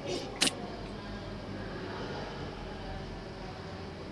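Steady low background noise on an open video-call line, with one short sharp click about half a second in.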